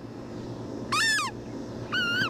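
German Shepherd puppy whining: two short high-pitched whines, the first about a second in rising and then falling, the second starting near the end.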